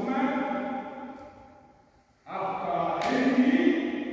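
A voice holding long, drawn-out vocal sounds that ring in a large hall. It fades away about a second and a half in and starts again, loud, a little after two seconds.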